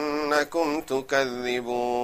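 A man chanting Quran recitation in a melodic, ornamented style, his pitch wavering through short phrases and then settling into a long held note near the end.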